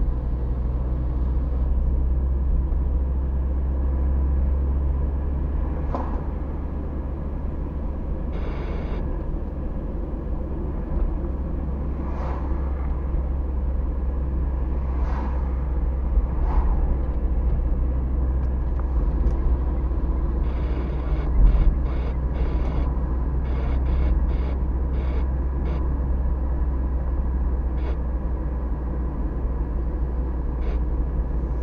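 Car driving on city streets heard from inside the cabin: a steady low rumble of engine and tyres on the road. A single thump comes about two-thirds of the way through, with a run of faint clicks around it.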